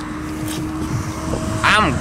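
A low rumble with a faint steady hum, then, about one and a half seconds in, a person's voice wavering up and down in pitch.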